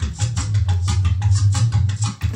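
Recorded backing track playing a quick, even percussion pattern over a steady bass line, with the saxophone resting between phrases.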